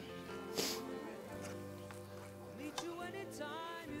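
Faint recorded music playing in the background, with steady held notes.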